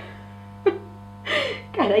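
Steady electrical mains hum on the recording, with a short breathy vocal sound about one and a half seconds in; speech begins right at the end.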